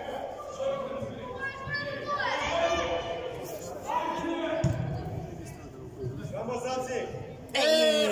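Voices calling out across a large indoor sports hall, echoing in the space, with a louder shout near the end.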